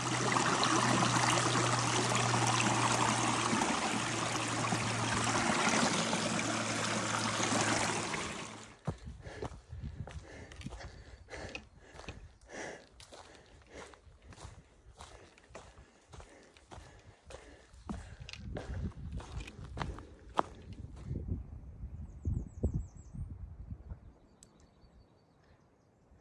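A loud steady rushing noise for about the first eight seconds. This is followed by about twelve seconds of footsteps on the stairs of a fire tower, roughly two knocks a second, which stop near the end.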